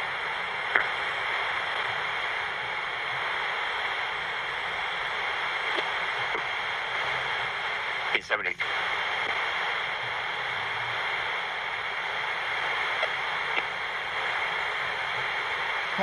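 Sony AM radio used as a spirit box, giving a steady static hiss, with a brief cut-out about halfway through.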